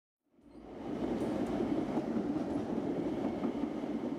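Train running on rails: a steady noise of wheels and cars on the track that fades in over the first second.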